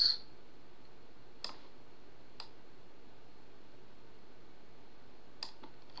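A few faint, separate computer mouse clicks, about three or four spread over the seconds, over a steady low microphone hiss.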